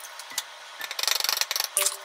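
A quick run of rapid small clicks and crackles, from kitchen items being handled at the counter, loudest about a second in and ending in one sharp crackle near the end.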